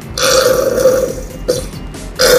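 Plastic squeeze bottle of thick orange sauce squeezed upside down over a blender jar, air and sauce spluttering out of the nozzle in one long burp-like blurt of about a second, ending in a short click.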